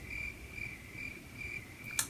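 A cricket chirping steadily in the background, short chirps at one pitch about three times a second. A single sharp click comes right at the end.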